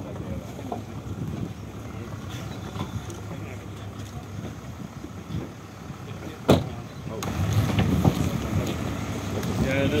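Low steady rumble with murmuring voices and shuffling around a car, and a single loud thump about six and a half seconds in, a car door shutting. The voices grow louder toward the end.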